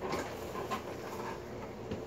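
Quiet room noise with a few faint, short clicks or knocks.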